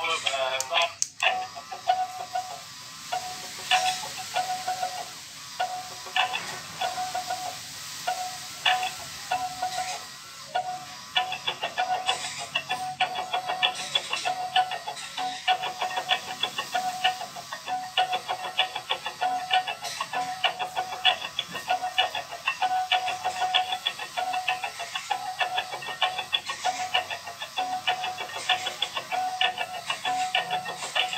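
A dancing cactus plush toy playing an electronic song through its small built-in speaker, with a repeating beat that gets busier about eleven seconds in.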